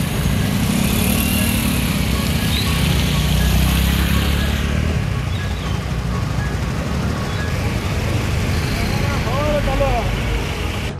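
Traffic driving through water on a wet road: scooters, motorbikes, a bus and cars passing, with engine rumble and a steady hiss of tyre spray and water gushing from a burst pipeline in the road. A few brief wavering tones come near the end.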